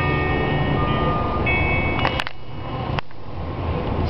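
Live acoustic folk music in a gap between sung lines: held instrument notes fade out over a low rumble. A few sharp clicks come about two and three seconds in.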